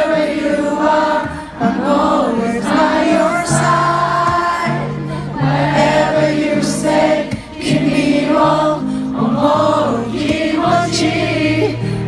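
Live rock ballad heard from within the crowd: a male singer's amplified voice over the band's steady held bass notes, with many voices singing together.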